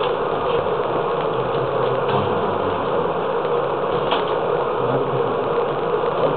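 A steady buzzing hum of room or recording noise, with faint scrubbing of a sponge wiping a chalkboard a few times.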